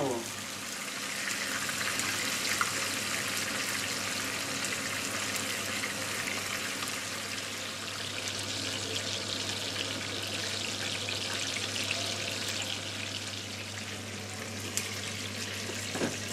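Halved chicken frying in hot oil in a frying pan: a steady sizzle with fine crackling.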